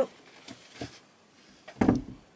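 A startled "oh" from a person who nearly falls over, followed by a couple of faint knocks and a louder scuffing thump near the end as she stumbles and catches herself.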